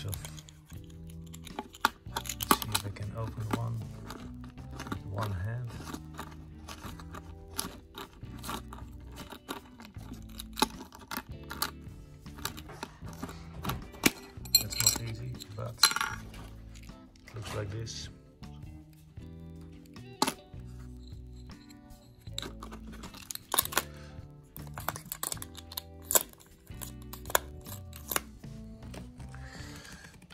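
Metal dies of a Stella Economic watch-glass press clicking and clinking as they are handled, lifted from their wooden box and set down on wood, over steady background music.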